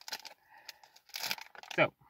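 Chocolate-bar wrapper crinkling in a run of short, irregular crackles as the bar is slid out of it, busiest a little over a second in.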